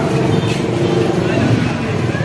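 Busy market street noise: a vehicle engine running close by, mixed with indistinct voices.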